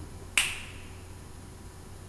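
A single sharp click about half a second in, with a brief ringing tail, over a faint steady low hum.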